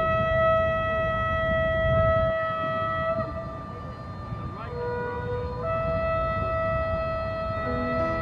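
Background music: a slow melody of long held notes on a flute-like wind instrument, changing pitch every second or few. A low rumbling noise runs underneath.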